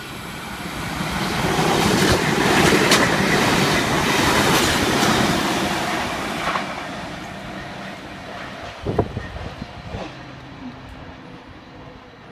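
A Sydney Trains V-set double-deck intercity electric train passes through the station without stopping. The rumble of its wheels on the rails grows over the first couple of seconds and then fades as it runs away, with clickety-clack from the rail joints and a few clacks near the end.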